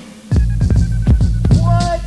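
Hip-hop beat: after a brief dip, a deep humming bass line comes in with steady drum hits, and a short pitched sample sounds near the end.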